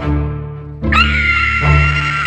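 Music: low bass notes struck in turn, each dying away, repeating a little faster than once a second. A little under a second in, a high held note with a slight waver comes in over them and carries on.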